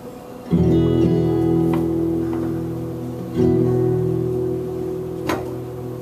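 Acoustic guitar strummed: one chord about half a second in, left to ring, then a second chord about three seconds later that rings and slowly fades. A single sharp click near the end.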